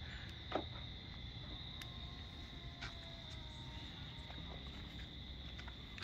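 Faint, steady high-pitched chorus of evening insects, a continuous trill with no break, with a few faint clicks.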